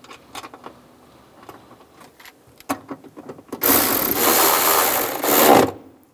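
Small metal clicks and knocks as a bracket and bolt are fitted, then a cordless ratchet runs for about two seconds driving the bolt in, stopping near the end.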